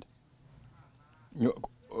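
A pause of near silence, then a short hesitant vocal "uh" from a man about one and a half seconds in.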